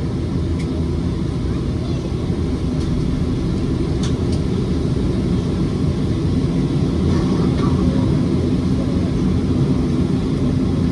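Cabin noise of a jet airliner taxiing: the engines and airflow make a steady low rumble, growing a little louder about seven seconds in, with a few faint clicks about four seconds in.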